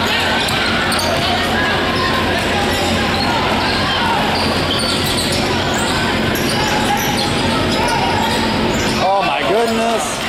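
Basketballs bouncing on a hardwood gym floor amid steady crowd chatter, all echoing in a large hall. A voice calls out near the end.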